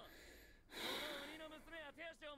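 An anime character's voice on the episode's soundtrack: a breathy hiss, then, from under a second in, a louder strained voice with heavy breath noise.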